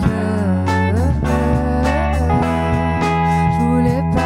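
Live band playing a pop song: electric guitar, bass and drums, with a woman's voice singing over them.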